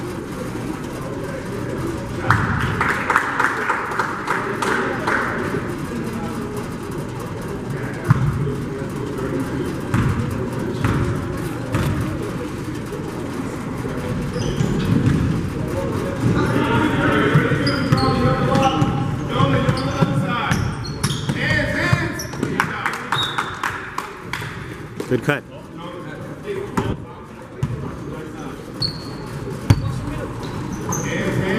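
A basketball bouncing on a hardwood gym floor during play, with indistinct voices of players and spectators echoing in a large gymnasium.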